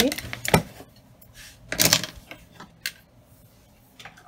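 Small hard craft tools being set down and moved on a cutting mat: a sharp click about half a second in, a short clatter near two seconds, and another click near three seconds.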